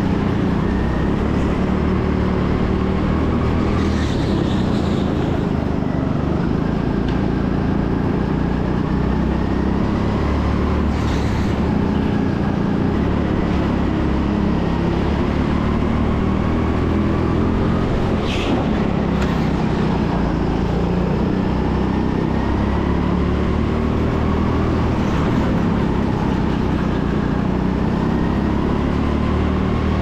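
Onboard sound of an indoor rental go-kart driven at racing pace: a steady low drive rumble with a faint whine that rises and falls as the kart speeds up and slows for corners.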